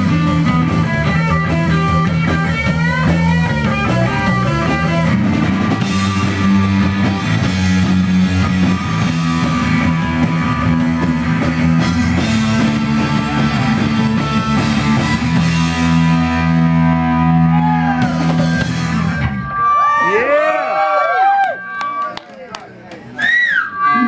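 Punk rock band playing live, with electric guitar, bass and drum kit together. The song stops about 19 seconds in, followed by a few seconds of rising-and-falling whistle-like glides.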